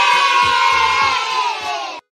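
A group of children cheering together in a celebration sound effect, with low thumps beneath the voices; it cuts off suddenly at the end.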